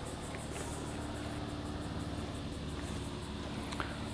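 Steady outdoor background noise: a low hum and rumble with a thin steady drone, and a fast, faint high-pitched pulsing throughout. A faint click comes near the end.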